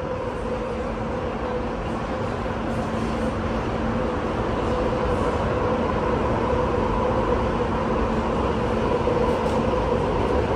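Interior noise of a Downtown Line Bombardier Movia C951-series metro train running: a steady rumble and hiss with faint held tones, growing gradually louder.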